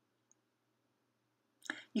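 Near silence with one faint tiny click, then a woman's voice starts speaking near the end.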